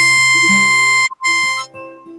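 Harmonica playing a long held note over acoustic guitar, then a shorter note after a brief break about a second in; the harmonica stops near the end, leaving the guitar quieter.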